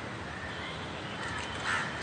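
Faint short bird calls over a steady hiss of background noise on an outdoor live link.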